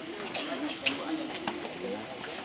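Indistinct chatter of a crowd of guests, many voices overlapping, with two short sharp clicks about a second in and halfway through.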